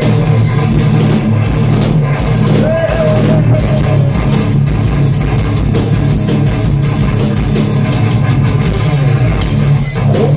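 Rock band playing live at full volume: electric guitars, bass and drum kit, heard from the crowd.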